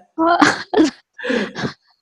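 A person's voice in four short bursts, in two pairs.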